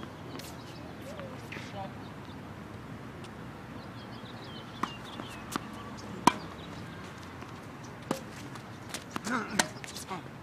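Tennis balls struck by racquets in a doubles rally: a series of sharp pops, the loudest about six seconds in, coming closer together near the end.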